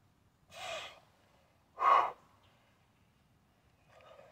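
A man breathing hard from the exertion of heavy one-arm kettlebell pressing: two loud, breathy gasps about a second apart, the second much louder.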